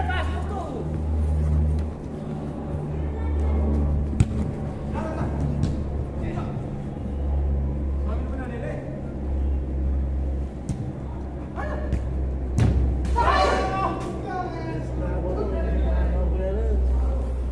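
A futsal ball struck hard on an artificial-turf court, one sharp kick about four seconds in and a few softer thuds later. Players shout near the end, over music with a heavy pulsing bass.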